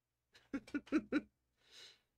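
A man's short chuckle of four quick laughs, followed by a soft in-breath near the end.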